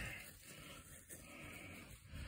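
Very quiet room tone, with no distinct sound standing out.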